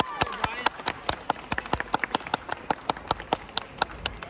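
A small audience clapping: distinct separate claps at about five or six a second, with a short cheering shout at the start.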